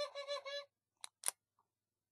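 A high-pitched, rapidly pulsing squeaky call that stops about two-thirds of a second in, followed by two sharp clicks about a second in.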